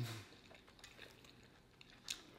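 A hummed "mmm" falls in pitch and fades just after the start. After it there are only faint, scattered clicks of eating with a fork.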